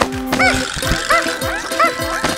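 Bouncy cartoon background music with a steady beat. A short squeaky chirp that rises and falls repeats three times, about 0.7 s apart.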